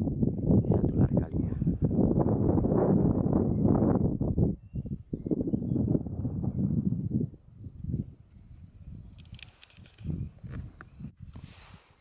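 Crickets trilling steadily in one high, unbroken note. For the first seven seconds a loud, low rumbling noise lies over them; after that the trill stands out, with only a few soft rustles.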